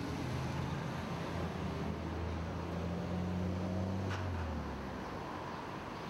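City street traffic noise, with a vehicle engine humming low, strongest through the middle and fading out near the end. A single short click about four seconds in.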